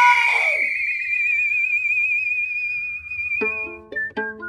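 A long, high whistle note held with a wavering vibrato, slowly fading away just before the end. A lower sliding note drops off about half a second in. Near the end a plucked-string tune begins.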